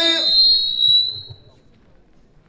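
A man's long held sung note through a microphone and PA breaks off just after the start, leaving a thin high whistle ringing on its own that fades out by about a second and a half, typical of PA feedback.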